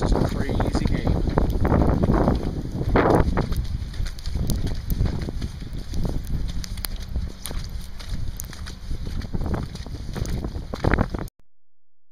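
Wind buffeting the microphone, with indistinct voices mixed in; the sound cuts off suddenly near the end.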